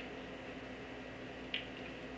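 Quiet room tone with a low steady hum, broken once near the end by a short wet click, a lip smack.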